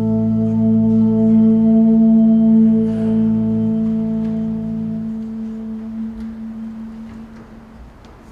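An organ holding a sustained chord of steady notes; the lowest notes drop out about four and five seconds in, and the remaining higher notes fade away toward the end.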